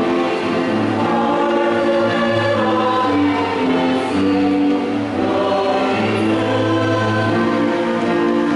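Church choir singing a slow hymn in held notes that change about once a second.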